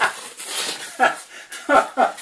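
Paper pages of an old bound book being turned and rustled, between short spoken syllables.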